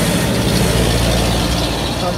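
An engine running steadily with an even low hum and a broad rattling haze over it.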